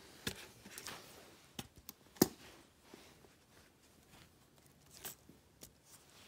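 Several short clicks and knocks as batteries go into the battery tube of a first-generation Apple Magic Keyboard, with the sharpest click about two seconds in.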